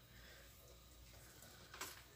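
Near silence: room tone, with one brief soft rustle near the end.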